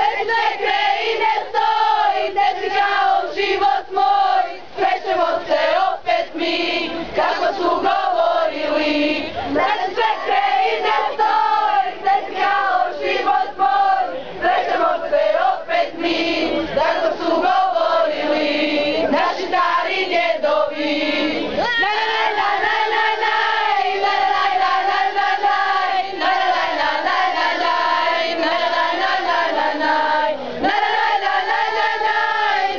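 A group of girls and young women singing loudly together in chorus, with children's voices among them.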